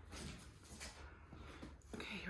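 Faint rustling and handling knocks over a low steady hum, a few soft strokes spread through the two seconds.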